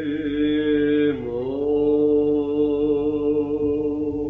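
A male Byzantine cantor chanting a long held note in the plagal second mode as the hymn closes. The pitch dips briefly about a second in, then settles and holds steady.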